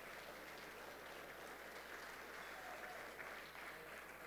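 Faint, steady audience applause in a large hall.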